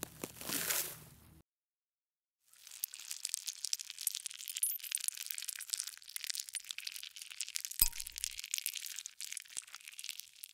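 Crackling, scratchy sound effect of tweezers picking at crusted gunk in a dirty earbud charging case: a short crackle at the start, a pause of about a second, then a dense run of fine crackles and clicks from about two and a half seconds in, with one sharper click near eight seconds.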